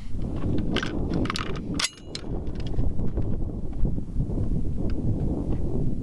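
A JP SCR-11 AR-style rifle in .224 Valkyrie being handled and single-loaded: a few sharp metallic clicks and clacks of the action in the first two seconds, one with a brief ring. Under them runs a steady low rumble of wind on the microphone.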